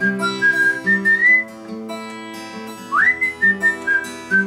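A person whistling a melody over a fingerpicked acoustic guitar playing a C–Am–Em–G chord progression. The whistling breaks off for about a second and a half in the middle, then comes back just before the three-second mark with an upward slide.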